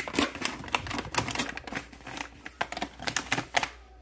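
Plastic microwave rice pouches being handled and pushed into a wire basket: a quick, irregular run of crinkles, taps and clicks that stops shortly before the end.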